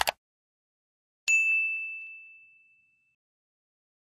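Subscribe-button animation sound effect: a quick double click at the start, then a single bright bell ding a little over a second later that rings on and fades away over about a second and a half.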